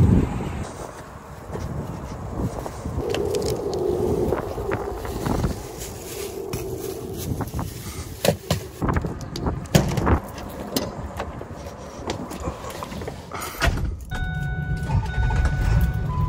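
Fishing rods and gear knocking and rattling as they are handled and stowed in a truck bed. Near the end a truck engine is running in the cab, with a steady electronic dashboard chime over it.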